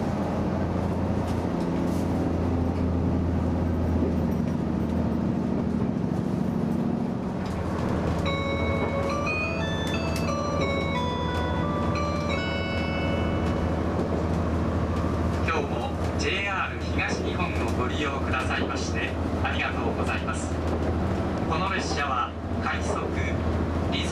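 Cabin sound of a moving HB-E300 hybrid train: a steady low drive hum whose pitch rises over the first seven seconds as it gathers speed. A chime of several notes plays from about eight to thirteen seconds, and a voice on the train's speakers follows from about sixteen seconds in.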